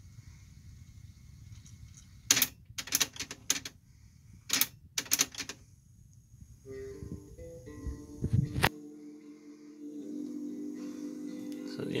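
Pioneer CT-W770 cassette deck winding the tape in its music-search mode with a low whir and a run of sharp mechanical clicks. About halfway through, music from the tape starts playing, and a click a little later ends the whir as the deck settles into play.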